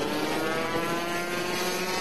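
Rotax two-stroke kart engine running at speed, a steady engine note whose pitch drifts only slightly.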